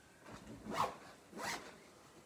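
A zip on a bag being pulled in two quick strokes, about a second apart.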